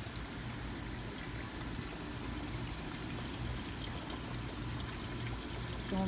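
Small garden fountain running: water pouring steadily from a pitcher-pump spout into a stone basin.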